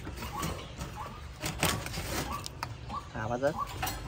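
Wire bird cage rattling, with a series of sharp metallic clicks and scrapes as a bird is put in and the cage door is worked shut.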